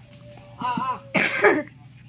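A person coughs loudly, with two quick bursts about a second in, after a brief voice sound.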